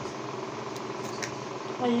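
Scissors cutting at hard plastic packaging: three faint clicks in the middle, over a steady background hum.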